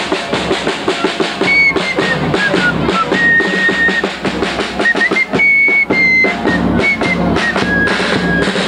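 Fife and drum street band: a fife plays a high march melody of held notes and quick steps over a bass drum and clash cymbals beating a steady, fast rhythm.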